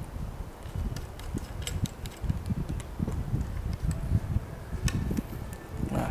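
Small clicks and rubbing as a spinning reel is fitted into a plastic rod reel seat, over an irregular low rumble of handling noise.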